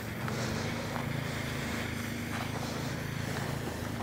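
Steady low engine hum from a side-by-side utility vehicle running in the field, with a few faint clicks over it.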